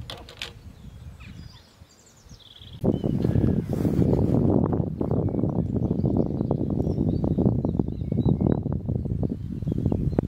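A few faint bird chirps over quiet lakeside ambience, then, about three seconds in, loud gusty wind buffeting the microphone, a low rumble that carries on until near the end.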